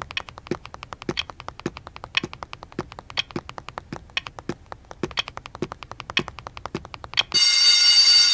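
Rapid, evenly spaced clicks, about six a second, with a steady ticking rhythm. About seven seconds in, loud music cuts in and takes over.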